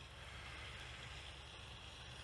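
Faint, steady outdoor background: a low rumble with a light hiss over it and no distinct events.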